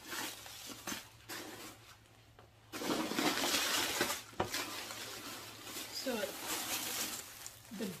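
Plastic packing wrap crinkling and rustling as it is pulled out of a leather handbag, starting about three seconds in, with a sharp click partway through.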